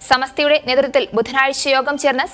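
Speech only: a woman reading the news in Malayalam, in a steady newsreader's delivery.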